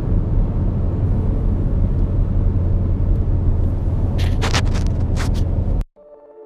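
Steady low rumble of a car driving at highway speed, heard from inside the cabin, with a few short hissing noises near the end before the sound cuts off abruptly.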